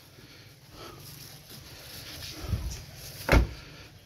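A car door being shut: a softer bump, then one sharp thud of the door closing a little after three seconds in.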